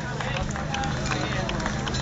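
Background chatter of an outdoor crowd, with scattered sharp taps and claps over a steady low hum.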